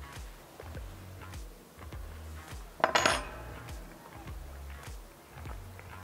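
Background music with a low bass line; about three seconds in, a fork clinks against a plate.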